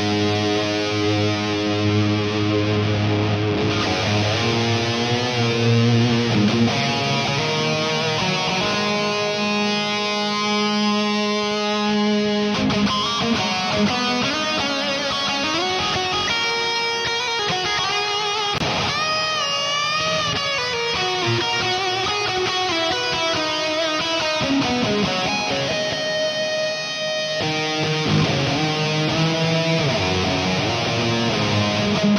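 Distorted electric guitar playing a metal lead through an amp simulator into a Marshall 1960 cabinet impulse response with Vintage 30 speakers, a mix of SM57 and V7X microphone captures. Held notes, with a quick run about two-thirds through and then bent notes with vibrato.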